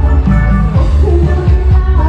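A woman singing a song into a microphone with a live band of keyboard and guitar, played loud through loudspeakers, with heavy bass and a steady beat.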